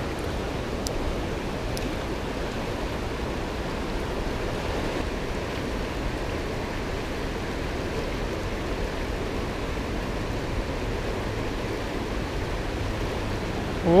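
Steady rush of a fast, shallow river running over rocks.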